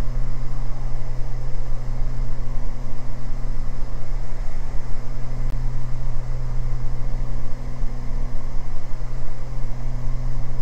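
Beechcraft G58 Baron's two six-cylinder piston engines and propellers running steadily in flight, heard inside the cabin as a steady low hum under rushing air noise.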